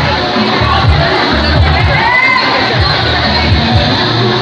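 Loud Zumba dance music with a steady bass beat, under a crowd cheering and shouting, with a shout standing out near the middle.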